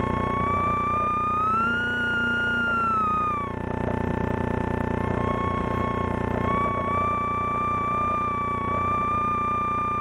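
Inside the cockpit of a Slingsby T67 Firefly idling on the ground: a high steady whine with overtones sits over the low drone of the piston engine. The whine rises and falls in pitch about two seconds in, drops out briefly, and comes back near the middle.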